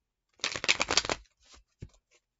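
A deck of tarot cards shuffled by hand: a quick burst of cards riffling together about half a second in, lasting under a second, followed by a couple of soft taps as the deck settles.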